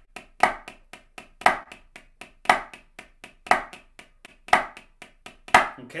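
Drumsticks playing steady hand-to-hand sixteenth notes on a drum practice pad, about four strokes a second, with an accented flam on the first note of each beat, about once a second.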